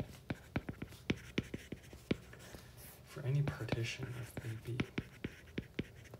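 Hard stylus tip tapping and clicking on a tablet's glass screen while handwriting, a quick irregular run of sharp clicks. About three seconds in, a low murmured voice hums for about a second.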